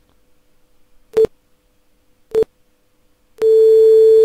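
Synthesized tone of a 426 Hz tuning fork from a virtual resonance-tube experiment. Two brief blips come about a second apart, then about three and a half seconds in a loud steady tone begins and holds, marking resonance of the air column in the closed tube.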